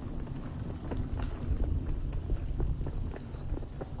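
Footsteps on a paved sidewalk, a few uneven steps walking up a slope, over a low steady rumble. A faint steady high insect-like tone runs underneath.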